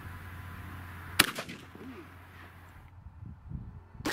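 A single shot from a 12-gauge shotgun firing a high-velocity Grimburg HP68 nylon-and-copper less-lethal slug. It is one sharp report about a second in, with a brief echo after it.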